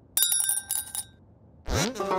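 Cartoon sound effect: a bright metallic jingle of quick clinks with high ringing tones, lasting under a second. Near the end a comic musical sting begins with a rising boing.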